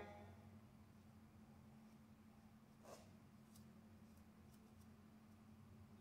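Near silence: room tone with a steady low hum, a faint brief rustle about three seconds in, and a few very faint ticks.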